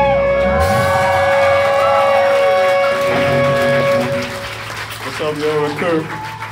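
Live rock band ending a song: the drums and bass drop out under a second in, and a held guitar note rings on for a few seconds before fading. Shouts and clapping from the crowd come in near the end.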